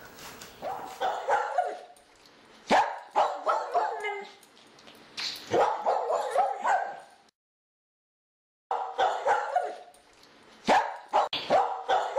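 Small dog barking and yipping in repeated short bursts, broken by a sudden total silence a little past halfway before the barking starts again.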